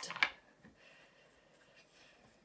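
Faint handling and rubbing sounds of a small two-ounce plastic paint bottle being squeezed out over a plastic palette, with a brief sharp rustle right at the start.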